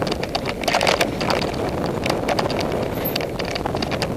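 Mountain bike ridden over dirt singletrack, heard from a mounted action camera: tyres rolling over dirt and rocks with a constant run of quick rattles and clacks from the bike, and wind rushing on the microphone.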